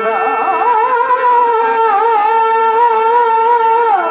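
A male stage actor singing a long, high note of a dramatic verse, quivering with ornaments at first and then held steady, with the melody falling away near the end. A steady lower harmonium tone runs beneath it.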